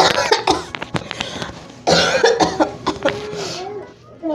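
A man coughing and making voice sounds without words, in two bursts about two seconds apart.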